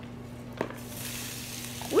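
Cooked rice dropping from a plastic container into hot oil in an electric frying pan. A soft knock comes about half a second in, then sizzling starts and builds.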